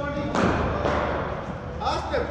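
A single sharp cricket-ball impact about a third of a second in, echoing in the large hall.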